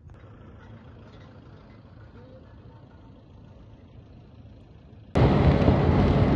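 Faint steady outdoor noise. About five seconds in, a cut brings loud wind rushing over the microphone of a moving vehicle, with its engine and road noise underneath.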